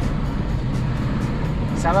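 Steady low road and engine noise inside a moving car's cabin, with music playing underneath.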